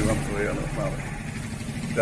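An engine idling, a steady low rumble with an even pulse, with a man's voice over it for about the first second.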